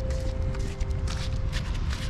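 Outdoor noise on a body-worn camera: a steady low rumble with a few faint light clicks, under a held note of background music.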